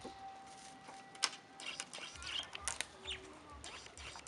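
Parrots chirping and giving short calls, many brief high chirps scattered through. There is a steady whistle-like tone for the first second and a half, and a sharp click just over a second in.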